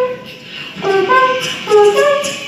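An a cappella group of voices singing a short, stepwise melodic phrase into microphones, heard about a second in and again near the end, with faint beatboxed percussion behind.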